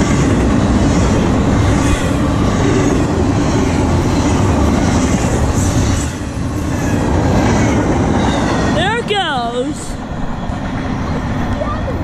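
Double-stack intermodal freight cars of a CSX train passing close by: a loud, steady rolling noise of steel wheels on rail, easing off in the last couple of seconds as the end of the train goes by.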